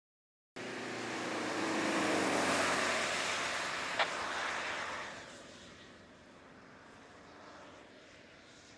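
Fiat Tipo sedan driving past on a track: engine and tyre noise cut in suddenly about half a second in, are loudest after two or three seconds, then fade as the car pulls away. A short sharp click about four seconds in.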